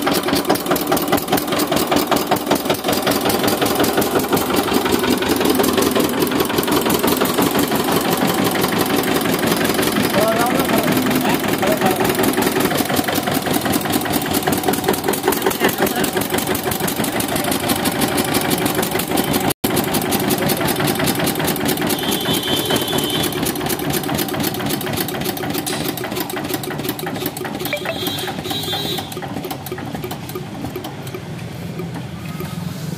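A 22 hp Eicher air-cooled diesel engine running steadily with a fast, even knocking beat, just after being started by belt from a smaller 4 hp engine.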